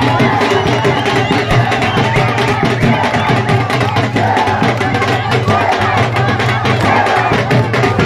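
A drum beaten in a fast, steady rhythm amid a dense crowd of voices shouting and chanting.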